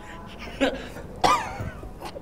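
A man laughing in short bursts muffled behind his hand. There are two main bursts, and the second, a little over a second in, is the loudest.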